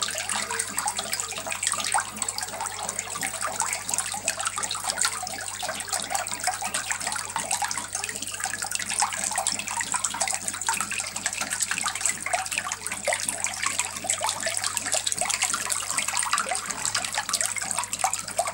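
Running water splashing steadily over a turtle's shell, a constant rushing and splashing without pause.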